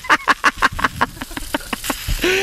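Lawn impact sprinkler ticking rapidly and evenly, about six or seven clicks a second.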